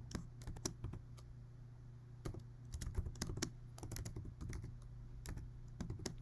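Computer keyboard typing: faint, irregular key clicks as a formula is entered.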